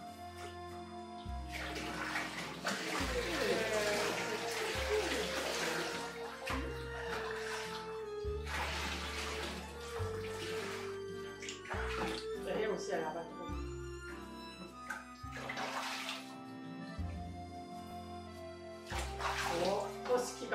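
Background music with a steady bass line, over water being poured from a bowl onto a Samoyed's coat and splashing in a bathtub in several bursts.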